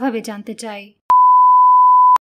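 Electronic cue beep: a single steady, pure tone lasting about a second, starting just past the middle after the speech stops. It marks the end of the dialogue segment before the interpreting recording begins.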